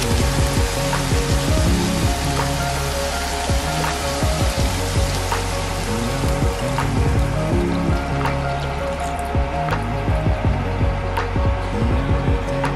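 Pork and onions sizzling in a frying pan, a steady frying hiss heard under background music; the sizzle thins out near the end as coconut milk is poured over the meat.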